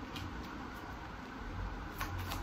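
Tarot cards shuffled overhand in the hands, faint soft papery slides over a steady background hiss.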